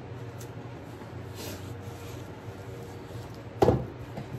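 A hand tool set down on a plastic-sheeted work table, giving one sharp knock near the end, over a steady low hum and faint rustling.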